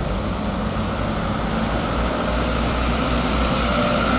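Road vehicles driving past in a convoy, engines running steadily, with a deep rumble that grows stronger about halfway through as a box truck passes close by.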